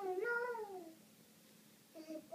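A toddler's drawn-out vocal sound, rising and then falling in pitch, lasting about a second.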